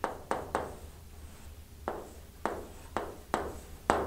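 Chalk striking and dragging on a chalkboard as lines of a diagram are drawn: about eight sharp clicks at uneven intervals, with faint scraping between them.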